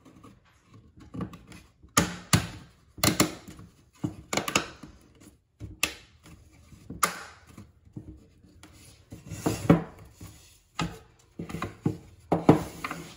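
Thin laser-cut maple plywood pieces knocking and clicking against each other and the table as they are fitted together by hand: about a dozen sharp, irregular taps, with light rubbing of wood between them.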